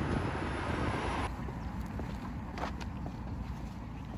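Outdoor street noise of road traffic, a car passing by, with a low rumble; the hiss stops abruptly about a second in, leaving a quieter low outdoor rumble with a few faint ticks.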